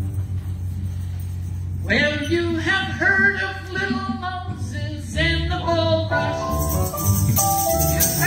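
Live gospel band with piano, upright bass and acoustic guitar starting up a song after a low steady hum. A tambourine joins in with bright jingling about two-thirds of the way through.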